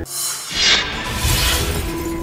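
A news-bulletin transition sound effect: a sudden crashing, shattering sting that swells and fades within about a second and a half, over the bulletin's background music.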